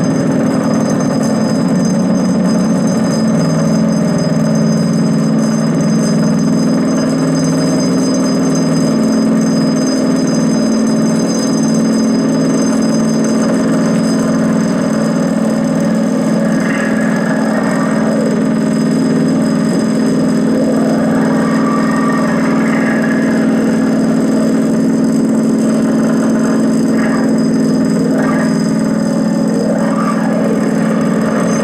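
Electroacoustic improvisation for prepared zither and electronics: a dense, steady low drone with thin high tones held above it. In the second half, gliding and scraping gestures rise and fall over the drone.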